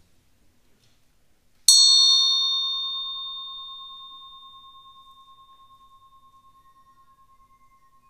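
A small meditation bell struck once, a little under two seconds in, then ringing with one clear high tone that slowly fades away.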